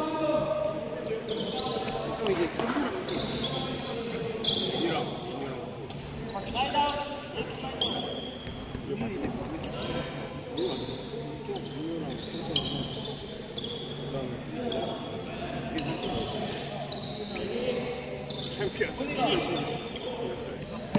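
Basketball bouncing on a hardwood gym court, a string of sharp thuds echoing around a large hall.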